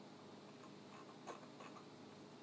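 Near silence: low room hiss with a few faint computer clicks, the clearest about a second and a quarter in.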